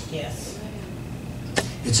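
A pause in a man's speech: faint low steady room hum, a single short sharp click about one and a half seconds in, then his voice starts again at the very end.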